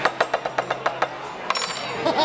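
Knife point stabbing rapidly on a wooden tabletop between the fingers of a spread hand (the five-finger knife trick), a fast run of sharp knocks at about ten a second that stops about a second in. A brief sharp shout or exclamation comes about one and a half seconds in.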